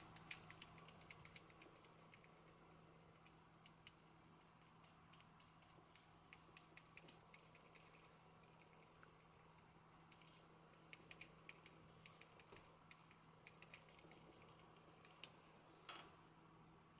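Near silence with faint, irregular light taps and clicks as a foam spouncer is dabbed through a plastic stencil, with two slightly louder clicks near the end.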